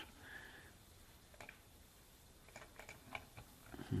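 A handful of faint, sharp computer mouse clicks, mostly in the second half, over quiet room tone.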